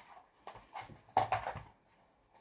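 Pit bull mix dog making a quick run of short vocal sounds, the loudest about a second in.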